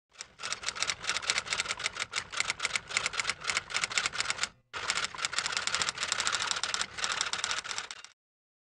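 Typing sound effect: rapid keystroke clicks, about eight to ten a second, with a brief pause about halfway through.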